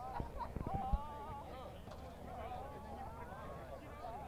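Faint, distant voices of players and onlookers calling and chattering across an open field, with a few soft knocks in the first second.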